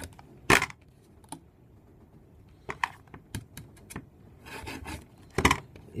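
A rotary cutter and a steel rule being worked on a self-healing cutting mat to cut small pieces of Theraband rubber. Scattered light clicks and taps, with a short rub of the blade about four and a half seconds in, and two sharp knocks: one about half a second in and one near the end.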